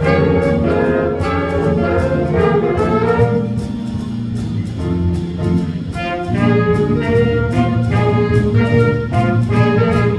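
Student jazz big band playing live: saxophones, trumpets and trombones in ensemble over piano, guitar, bass and drums, with a steady beat on the drums. The horns ease off around the middle and come back in louder a little after six seconds.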